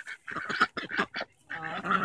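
White Pekin ducks quacking: a quick run of short calls, a brief pause, then a longer call near the end.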